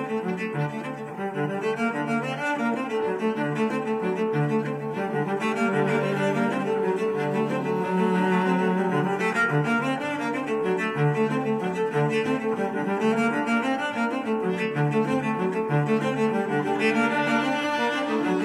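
Instrumental background music with sustained low bowed-string notes, like a cello, at a steady level.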